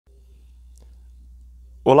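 A faint, steady low hum with a single faint tick just under a second in; a man's voice begins right at the end.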